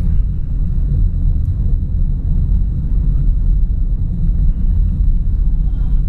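Steady low rumble of a car driving along a road, engine and road noise heard from inside the cabin.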